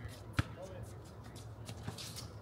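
Basketball bouncing on an outdoor hard court: one sharp bounce about half a second in and a fainter one near the end.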